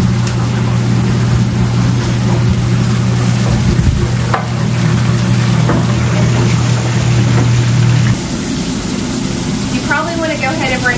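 Burger patties sizzling on a flat-top griddle over a steady low hum of kitchen ventilation, with a few light clicks and scrapes of a spatula. The hum drops away about eight seconds in.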